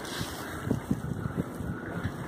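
Snowstorm wind buffeting a phone's microphone: an irregular low rumble in gusts.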